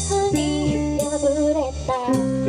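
Live band playing a Japanese pop-rock song: a female lead voice singing over electric guitar, electric bass, keyboard and a drum kit, with cymbal hits at the start and about a second in.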